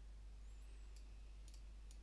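Near silence with a low steady hum, broken by a few faint computer-mouse clicks, one about a second in and a couple close together near the end.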